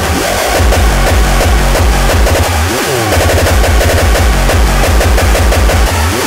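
Mainstream hardcore electronic dance music from a DJ mix: a fast, heavy kick drum with synth lines over it. The kick cuts out briefly about halfway through.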